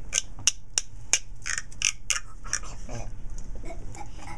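Hand-held percussion shaker tubes being shaken: a series of sharp rattling clicks, about three a second, then a run of looser, busier rattles.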